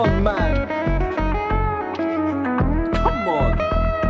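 A band's instrumental passage: an electric guitar plays a lead line with sliding, bending notes over a steady bass and drum beat.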